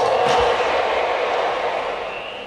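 Dense electronic sound texture from a live laptop-and-microphone sound-art performance: a steady, noisy middle-range band with a few faint held tones, which grows quieter over the last second.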